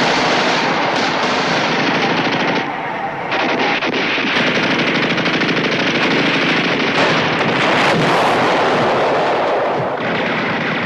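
Sustained machine-gun and rifle fire, rapid and continuous, with a brief lull about three seconds in.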